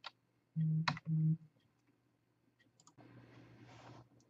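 Computer mouse clicks as the lecture slide is advanced: one at the start and a sharper one about a second in. A short two-part steady hum from the lecturer's voice surrounds the second click, and a soft breath-like hiss comes near the end.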